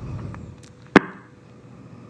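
A single sharp click about a second in, over faint background hum.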